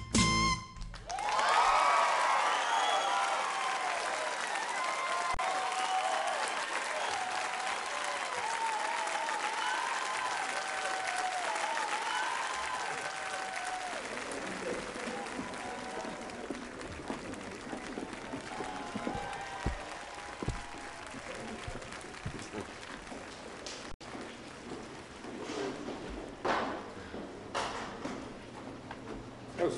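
The band's final chord stops about half a second in, then an audience applauds and cheers with scattered whoops. The applause is loudest just after the music ends and slowly dies down.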